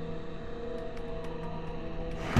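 Ominous soundtrack music: a few sustained notes held steady over a low, dark bed, with no beat.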